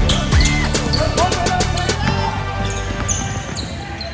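Basketball bouncing on a hardwood gym floor, with sneakers squeaking during play and a few sharp knocks, over music and voices in the hall.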